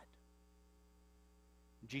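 Near silence with a steady low electrical mains hum. A man's voice starts a word near the end.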